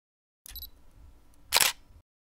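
A phone camera's shutter sound: one short, loud snap about one and a half seconds in, over faint room noise that cuts in abruptly about half a second in.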